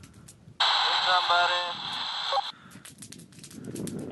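A voice over a two-way radio: about two seconds of speech in hiss that cuts in and out abruptly, about half a second in. Faint crackle and wind noise follow.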